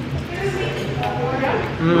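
Voices, mostly speech, ending in a man's long appreciative "mmm" as he eats a bite of pizza.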